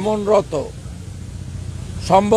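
A man speaking into press microphones, his words breaking off after about half a second; then a pause filled with low, steady outdoor street noise with traffic.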